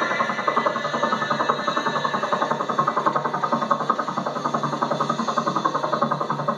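Helicopter rotor chop from a film soundtrack, played through a television speaker: a fast, steady, evenly spaced whop-whop, with music faint beneath it.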